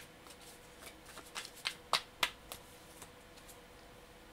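A tarot card deck being shuffled by hand: a string of irregular, crisp card snaps and slaps, the loudest about two seconds in.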